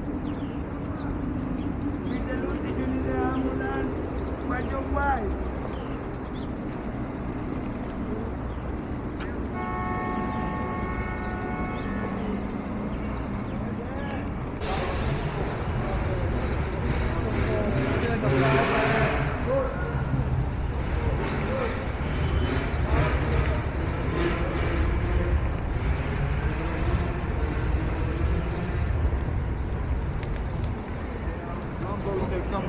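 City street ambience: steady traffic noise with people talking in the background. There is a brief held horn-like tone about ten seconds in, and a louder passing vehicle noise a few seconds later.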